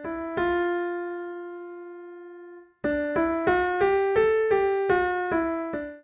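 Virtual Steinway D grand piano (Pianoteq) sounding one note that rings and fades for about two seconds. After a short gap it plays a quick nine-note scale up and back down: D, E, F raised a quarter tone, G, A and down again, a microtonal scale.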